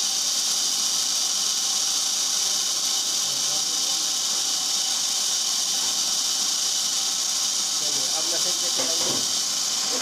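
Incense-stick (agarbatti) making machine running with a steady high hiss, its level unchanging, while bamboo sticks are fed into the extruding head.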